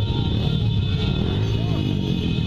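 Busy street noise: a low steady rumble of motorbike traffic, with music and faint voices over it.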